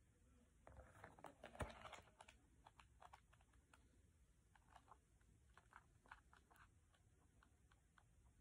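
Faint pages of a paperback book being flicked through by thumb: a soft rustle in the first couple of seconds, then a long run of small quick ticks as the page edges snap past.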